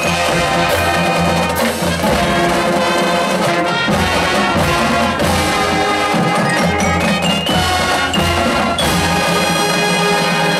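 Marching band playing live on the field: brass section sustaining chords over snare and bass drums, with marimbas and other front-ensemble mallet percussion.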